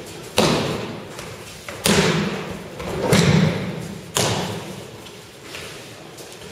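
Breakfalls on tatami mats: about four heavy thuds and slaps roughly a second apart, each followed by a long echo in a large hall.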